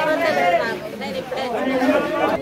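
Speech: a woman talking steadily.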